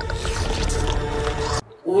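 Film soundtrack: a dark score with a held low tone under sound effects. It cuts off suddenly about a second and a half in.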